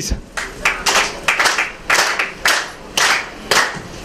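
Audience clapping in unison, a steady rhythm of about three claps a second.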